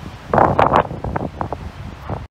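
Gusty wind buffeting the phone's microphone, rumbling and rising sharply in loudness about a third of a second in.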